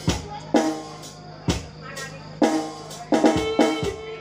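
A live band playing a stop-start passage. About eight sharp drum strokes with a deep boom fall unevenly, clustered toward the end, between sustained keyboard and electric guitar chords.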